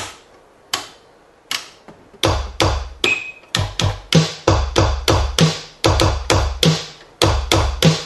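E-mu Drumulator drum machine playing its sampled drums: three single sharp hits about three-quarters of a second apart, then from about two seconds in a steady beat. The beat mixes a deep bass drum from a custom EPROM bank with a snare from the original factory kit.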